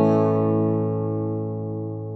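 Electric guitar chord played through a T-Rex Soulmate multi-effects pedal, recorded direct: a single chord left to ring out, slowly fading.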